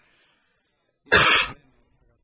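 A man coughs once, a short loud cough about a second in, with near silence around it.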